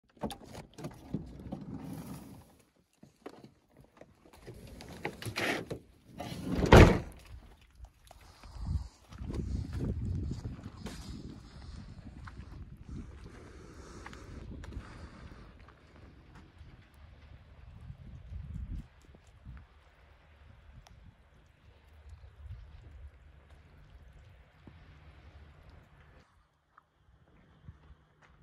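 Knocks, rustles and thunks of things being handled inside a camper van, the loudest a single heavy thunk about seven seconds in. Then a low rumbling noise fades out a little before twenty seconds in, leaving only faint low noise.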